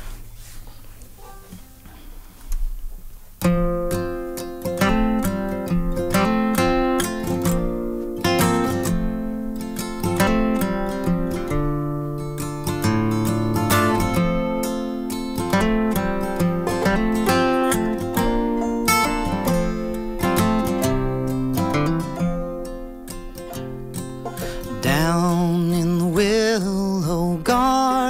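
An acoustic guitar and an open-back banjo play an old-time ballad's instrumental introduction, starting about three and a half seconds in after a quiet moment. Near the end a man's voice begins singing over them.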